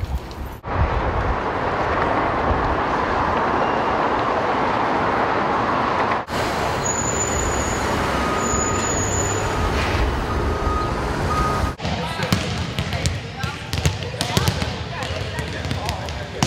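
Steady city street noise with passing traffic for most of the clip, then, about twelve seconds in, volleyballs being hit and bouncing on a gym floor with players' voices.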